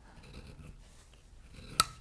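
Faint scraping of a leather skiver shaving the back of veg-tan leather to thin it, with one sharp click near the end.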